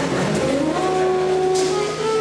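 Live small-group jazz: a saxophone plays held notes with rising pitch slides over upright bass and drums, with a cymbal splash about one and a half seconds in.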